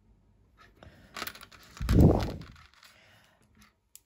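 Small plastic LEGO pieces handled and pressed together: a few light, sharp clicks, one about a second in and one near the end. The loudest sound is a dull, low noise lasting under a second about two seconds in.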